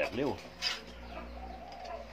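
Faint bird calls in the background, with a brief sharp click a little under a second in.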